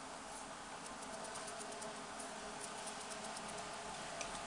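Quiet room tone: a steady low hiss with faint, light ticks scattered through it.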